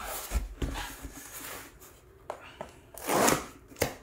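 A taped cardboard box being cut and opened: scattered clicks and scrapes of a cutter and cardboard, then a louder rip a little over three seconds in as a flap is pulled free, and one last click near the end.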